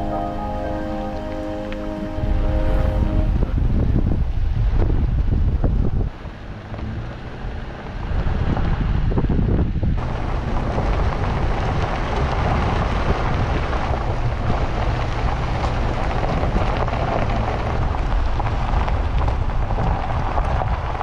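Vehicle driving on a gravel road: an even rumble of tyres on gravel and wind on the microphone, with a brief dip a few seconds in, while background music fades out in the first few seconds.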